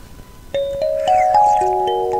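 A tune of bell-like chime notes starts about half a second in, the notes entering one after another every quarter second or so and ringing on together.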